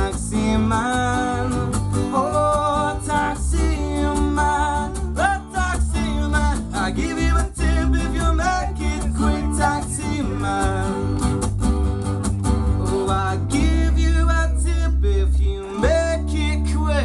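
Live ska-folk band music: acoustic guitars strummed over an electric bass line, with a voice singing a melody.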